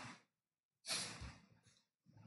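A person's single short breath out, about a second in, between stretches of silence.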